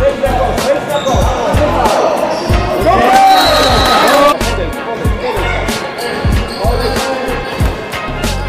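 Basketball bouncing repeatedly on a hardwood gym floor, with players' voices calling out over it.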